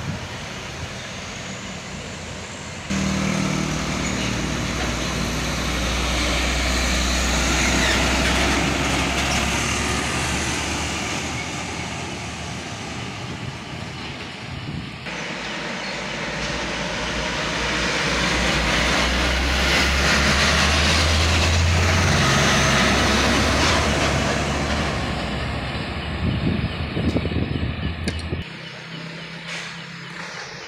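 Heavy trucks loaded with sugarcane driving past with engines running, the sound swelling twice, about a quarter of the way in and again about two-thirds through. It jumps suddenly near the start and again midway, and cuts off suddenly near the end.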